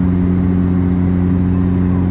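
Steady drone of a Bombardier Dash 8 Q400's Pratt & Whitney PW150A turboprops and six-bladed propellers, heard inside the cabin beside the propeller in flight. It is a loud, constant hum with several steady low tones over a rumble.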